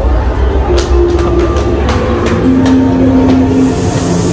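Haunted-house effects soundtrack: a heavy low rumble with a string of sharp metallic knocks and two held low droning tones, one after the other. A burst of hiss comes in near the end.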